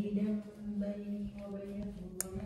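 A person humming long, held notes at a low, steady pitch that shifts slightly from note to note.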